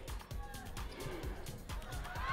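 Background music with a regular low beat, quieter than the commentary around it.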